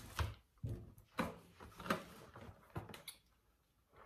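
Hands handling rice-paper sheets and a plastic packaging tray: about six short rustles and light knocks, stopping about three seconds in.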